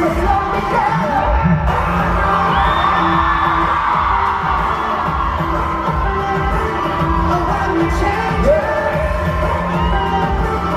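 Live K-pop concert sound recorded from the audience: a loud dance-pop track with a heavy bass beat and sung vocals, with no pause.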